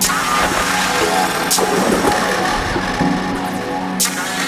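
Live electronic music from a Eurorack modular synthesizer rig and a Yamaha MODX, tweaked by hand as it plays. Sustained pitched drones layer with shifting textures, and a short hiss-like noise burst comes about a second and a half in.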